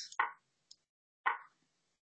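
Two short plopping move sounds from an online chess board, about a second apart, as pieces are played on the board.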